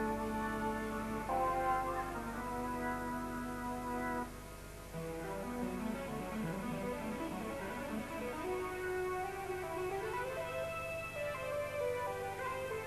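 Electronic keyboards and synthesizer playing an unaccompanied opening: sustained chords that change every couple of seconds, then a lower line of moving notes from about five seconds in under further held notes.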